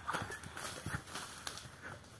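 Two people running off barefoot over dry dirt and leaf litter: a quick, irregular run of soft footfalls that grows fainter toward the end.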